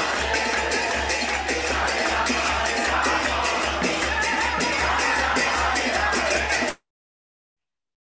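Kirtan: a crowd of devotees chanting to hand cymbals (karatalas) clashing on a fast, steady beat over a pulsing mridanga drum, heard as a screen-shared recording. It cuts off suddenly near the end, leaving silence.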